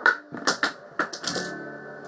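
Acoustic guitar played with sharp percussive strokes: about six dry clicks in under two seconds, the loudest at the very start, over strings still faintly ringing.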